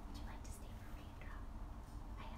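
Faint, low voices, mostly whispered, with no clear words, over a steady low hum.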